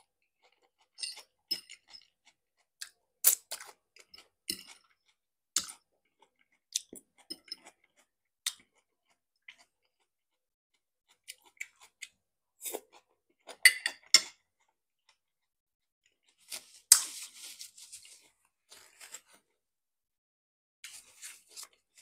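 Close-up chewing and crunching of marinated onion and raw cabbage salad. The sound comes in short, scattered crunchy bursts with quiet pauses between them.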